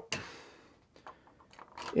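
Faint handling noise from a small hand tool and metal model parts: a brief rustle that fades quickly, then a few light clicks about a second in as the spare tire is brought to its mount.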